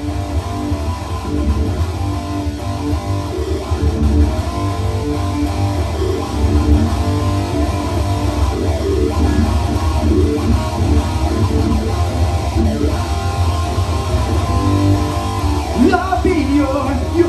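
Ibanez electric guitar playing an instrumental passage of a rock song, with bass underneath.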